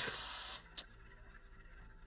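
A short hiss lasting about half a second, then near silence with one faint click.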